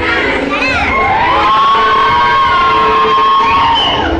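Crowd of children cheering and shouting in a hall, with one long drawn-out cheer that rises and is held for about two and a half seconds before it breaks off near the end.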